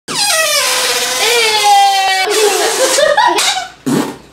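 Air squealing out of a stretched rubber balloon neck: a loud, fart-like raspberry tone that drops in pitch, holds steady, then wavers before cutting off near the end.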